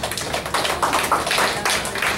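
A small seated audience clapping in applause, a dense irregular patter of many hand claps.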